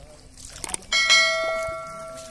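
A notification-bell sound effect: a couple of short clicks, then one bright struck ring with several steady overtones that starts about a second in and fades over a second before cutting off.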